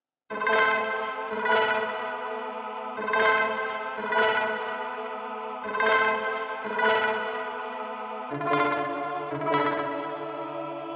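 Arturia Analog Lab software synth playing back a slow melodic pattern from the FL Studio piano roll: notes with echo and chorus, a new one about every second and a quarter over a held lower note that steps down about eight seconds in. Playback starts about a third of a second in.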